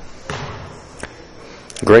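Low gymnasium room noise with a single sharp knock about a second in: a basketball bouncing on the hardwood court.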